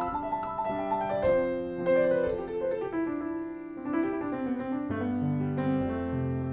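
Piano improvisation using only the white notes over the riff's chords: quick right-hand melody notes run over left-hand chords, and deeper bass notes come in near the end.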